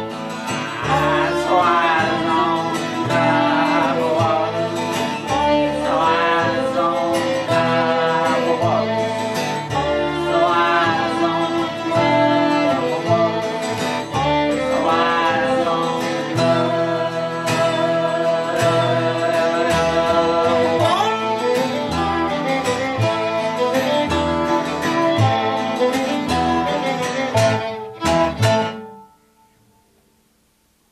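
String band playing a waltz in three-quarter time on fiddle, acoustic guitar, dobro and upright bass. The fiddle and dobro carry wavering melody lines over bass and guitar. The tune closes on its last notes near the end.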